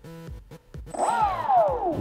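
Small brushless outrunner motor of an RC plane, with its propeller loosely fitted, briefly throttled: a whine starts about a second in, climbs quickly, then falls steadily in pitch as the motor spins down.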